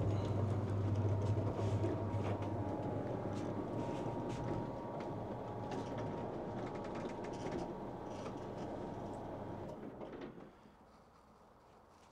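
Observatory's sliding roof rolling open, a steady rumble with a low hum that fades out about ten and a half seconds in as the roof stops.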